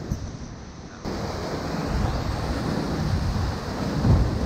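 Steady rush of whitewater from the river, with low rumble on the action-camera microphone; the sound jumps louder about a second in.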